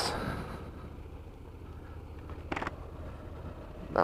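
Honda NC 750X motorcycle running at low speed over a cobblestone street: a steady low engine and road rumble, with one short burst of noise about two and a half seconds in.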